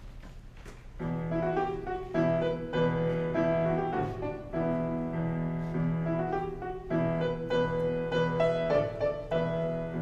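Piano accompaniment playing the introduction to a choral piece, starting about a second in: sustained notes in a repeating pattern of phrases, with no singing yet.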